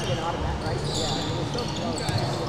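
Basketball being dribbled on a hardwood court in a large, echoing gym, with a few short high sneaker squeaks.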